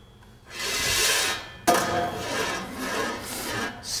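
A small rider rolling down a model roller-coaster loop track, a rolling and rubbing noise that starts about half a second in. A sharp knock comes near the middle, then the rolling goes on.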